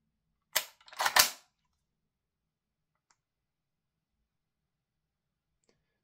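Mechanical clacks from the action of a VFC MP5K PDW gas blowback airsoft SMG being worked during a function check after reassembly. There is a sharp click, then a louder metallic clack about half a second later, both in the first second and a half, and after that only two faint ticks.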